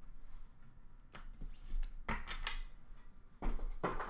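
Trading cards being handled and set down: a handful of soft taps and rustles with light thumps, the loudest shortly before the end.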